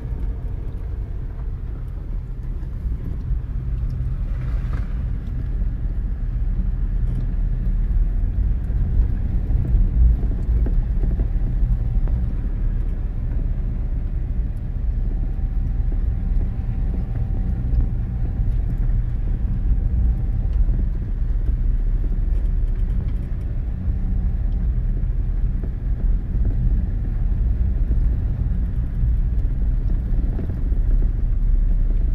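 Car driving slowly, heard from inside the cabin: a steady low engine and road rumble.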